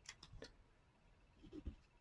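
Near silence: room tone with a few faint ticks.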